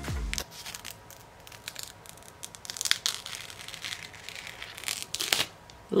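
Clear protective plastic film being peeled off an eyeshadow palette's mirror, crackling and crinkling in spells, most around three seconds in and again about five seconds in.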